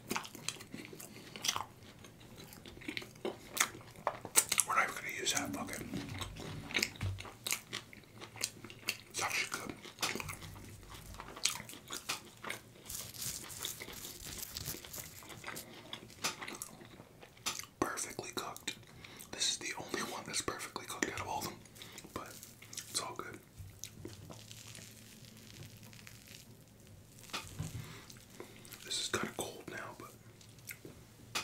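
Close-up mouth sounds of eating: wet chewing and smacking of stretchy melted cheese and beef, with crisp crunches of fried hash brown patties coming in several bursts.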